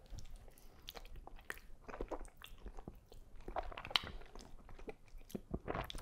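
Chewing a mouthful of soft, sauced sliced wheat noodles, picked up close: a scatter of small, wet mouth clicks and smacks.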